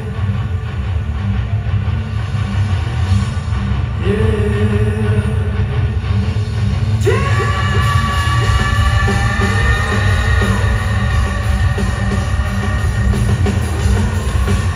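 Live industrial rock band playing through a concert PA, heard from the crowd: heavy drums and bass throughout, with a high sustained note that comes in suddenly about halfway.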